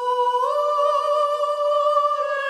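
A single voice holding one long high note, hummed or sung as a line of chorale, gliding up to pitch, stepping slightly higher about half a second in, then held.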